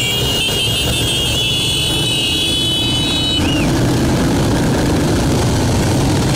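A group of small motorcycles riding past, engines running steadily. A high steady tone over them cuts off about three and a half seconds in.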